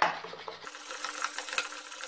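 Wire balloon whisk beating eggs and sugar in a ceramic bowl by hand, its wires scraping and clicking against the bowl in quick repeated strokes. The eggs and sugar are being beaten until the sugar dissolves and the mixture turns pale.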